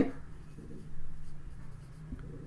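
Marker pen writing on a whiteboard: faint rubbing strokes as a word is written, strongest around the middle.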